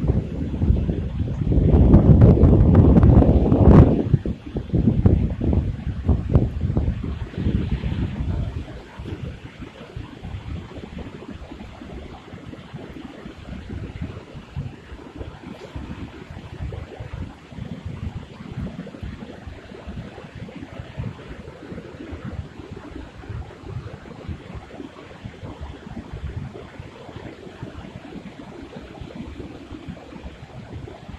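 Wind buffeting the microphone: heavy low rumbling gusts for the first several seconds, easing after about eight seconds to a steadier, quieter rumble.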